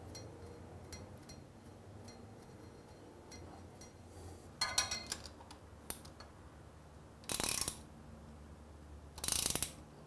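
Socket ratchet clicking in three short bursts, about five, seven and a half and nine and a half seconds in, as it winds the gearbox drain plug home, with a few faint clicks before.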